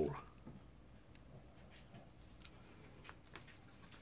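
Faint, scattered clicks of small metal cooler-mounting bracket parts being handled and pushed together by hand, as a stubborn piece fails to snap into place.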